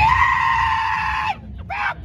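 A man yelling in imitation of a dog: one long, held howl-like yell, then short barking shouts of 'bow' starting about a second and a half in.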